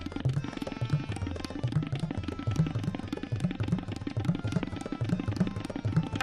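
Tabla solo: a fast, dense run of strokes on the dayan and the low bayan, accompanied by a harmonium playing a repeating melody (lehra) in sustained tones.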